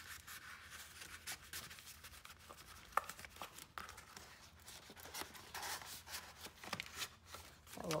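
Paper rustling and light scraping as the pages and pockets of a handmade paper journal are handled, flipped and pressed flat, with scattered small clicks and a sharper tap about three seconds in.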